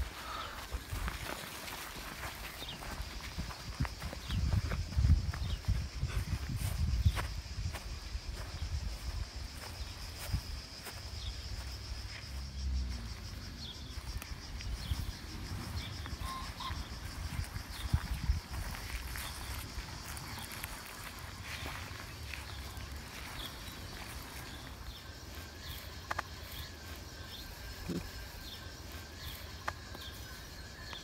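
Outdoor ambience: wind rumbling on the microphone in gusts for the first dozen seconds, a steady high buzz of insects, and scattered short chirps and small clicks.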